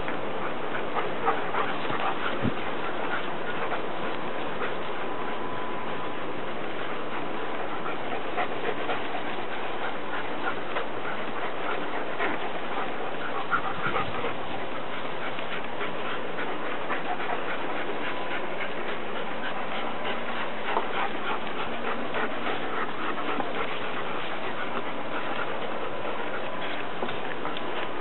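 Six-month-old German shepherd puppy panting and snuffling close by, with small scattered rustles and clicks over a steady hiss.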